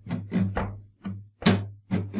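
Steel-string acoustic guitar strummed in a slow sixteenth-note pattern, quick lighter strums between sharp accented strokes on beats 2 and 4. The accent about one and a half seconds in is a percussive slap on muted strings, standing in for a snare drum.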